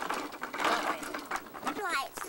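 Indistinct voices with a few light clicks, and a high voice rising in pitch near the end.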